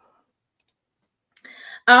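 Near silence broken by a faint tick and then a sharper click, about two-thirds of a second apart, followed by a soft faint sound just before a woman's voice says "um".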